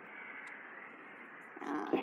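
Steady low background hiss with no distinct events, swelling into a short louder rustle near the end.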